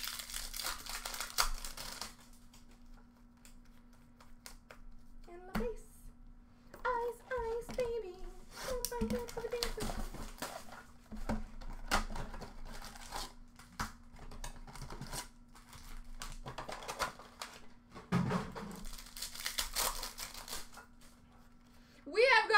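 Foil wrappers of hockey card packs crinkling and tearing as the packs are opened, with cards handled and sorted in irregular bursts of rustling and crackle.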